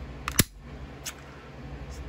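Two sharp metallic clicks in quick succession a little under half a second in, from a Makarov pistol being handled, followed by a couple of faint ticks.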